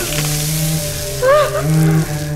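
Dramatic trailer sound design: a loud hiss of noise over a sustained low drone, with a short wailing tone that swoops up and then down about one and a half seconds in.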